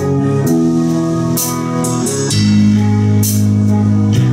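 Live rock band playing: electric guitars hold sustained chords, changing about every two seconds, over a drum kit with cymbal crashes.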